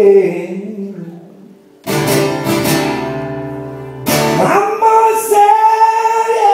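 Live acoustic guitar and singing: a sung phrase fades away, a strummed chord rings out and decays about two seconds in, a second chord is strummed about two seconds later, and then a long sung note is held.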